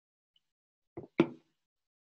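Drinking bottle set down on a desk: two quick knocks about a second in.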